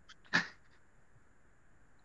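A man's voice gives one short, clipped word about a third of a second in, followed by near silence with a faint steady high hum.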